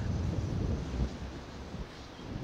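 Wind buffeting the microphone of a slingshot ride's onboard camera as the capsule swings through the air, a low rumble that eases off about halfway through.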